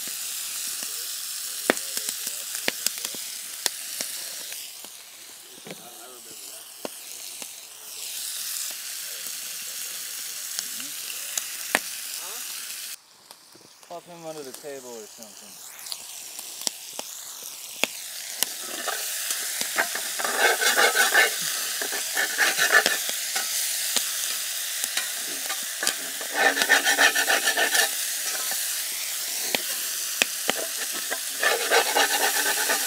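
Bacon sizzling and popping in a cast iron skillet over a campfire, a steady frying hiss dotted with small grease pops. It dips away briefly about 13 s in, and in the second half it grows louder twice as the bacon is stirred and turned in the pan.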